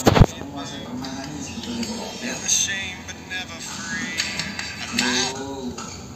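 A sharp knock right at the start, then faint sound from a television broadcast of a badminton match, with muffled voices.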